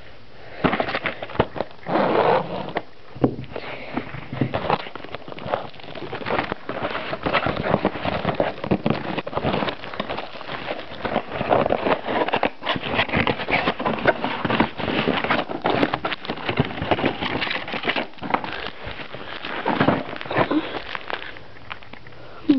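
Hands opening a cardboard blaster box of trading cards and tearing into its plastic-wrapped packs: an irregular run of crinkling and crackling rustles, louder about two seconds in and again near the end.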